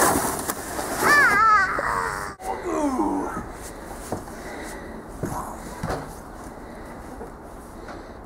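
A young child's high-pitched squeal and giggles about a second in and again around three seconds in, then quieter with a few faint knocks.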